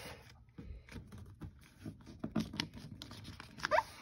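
A sheet of paper being folded in half by hand on a wooden desktop: soft rustles, scrapes and small creasing taps. Near the end come a few louder taps and a brief squeak.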